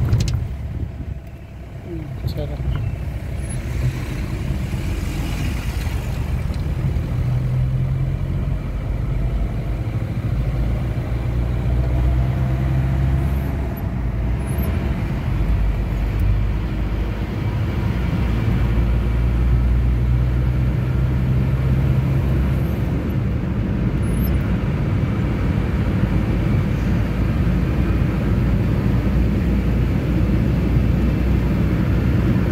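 Steady engine and road noise heard inside a car's cabin while driving at highway speed, a low rumble that dips briefly about a second in, then rises and holds steady.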